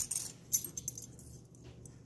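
Stainless steel wax carving tools clinking against one another as they are handled: a few light metallic taps, the sharpest about half a second in.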